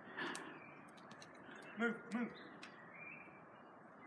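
Faint, sparse knocks of sticks striking a fallen tree trunk, with two short voice sounds close together about two seconds in.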